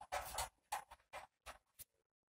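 Pen writing on paper: a faint run of scratching strokes, one longer stroke at the start, then several short separate strokes.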